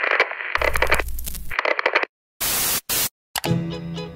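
Electronic glitch and TV-static sound effect: harsh crackling noise bursts, cut twice by abrupt dead silences about two and three seconds in. Music comes back in near the end.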